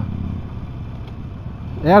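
Harley-Davidson Sportster Forty-Eight's 1200 cc air-cooled V-twin running steadily at low revs while cruising, a low rumble under the ride.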